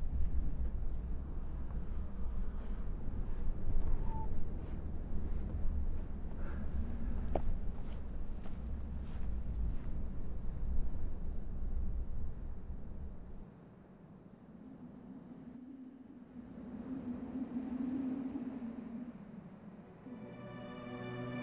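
Low, steady rumble of wind outdoors, with scattered faint clicks. It drops away abruptly about two-thirds of the way through, leaving a quieter bed that swells briefly with a low hum near the end.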